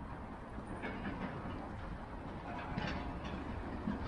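Fat bike rolling over paving slabs, heard from the handlebars: a steady low rumble of the wide tyres with a few light clicks.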